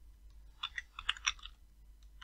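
Computer keyboard typing: a quick run of about eight faint key clicks lasting about a second.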